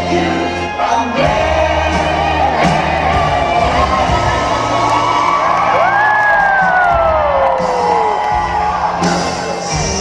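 Rock-and-roll music playing with an audience cheering and whooping over it; a long whoop falls in pitch about six to eight seconds in.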